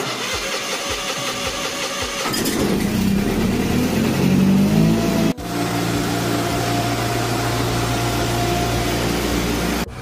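Massey Ferguson garden tractor engine being cranked by its starter for about two seconds. It then catches and speeds up, with its pitch rising. After a brief break just past halfway, it runs steadily.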